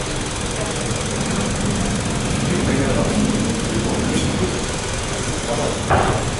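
Steady background noise of an open gym, with indistinct voices in the background.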